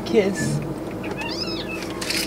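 A short, high-pitched, meow-like whine that rises and then falls, about halfway through, after a brief low voice sound near the start.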